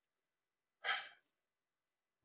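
A man's single short breath about a second in, between phrases of speech; otherwise near silence.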